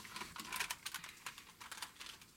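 Light, irregular clicking and tapping of a plastic Transformers dinosaur figure being gripped and lifted off a tabletop, its jointed parts and feet knocking as it is handled.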